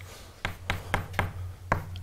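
Chalk writing on a blackboard: a quick run of about half a dozen sharp taps as the chalk strikes the board, starting about half a second in.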